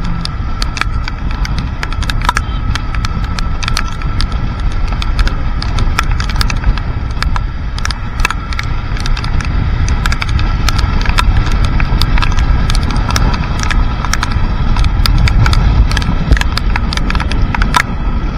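Wind rumbling over the microphone of a moving motorcycle in the rain, with fast irregular ticks of raindrops hitting the camera and a faint steady whine underneath.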